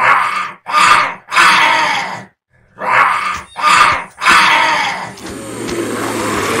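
Harsh monster-like growls from a voice, six of them in two groups of three, each under a second long with short breaks between.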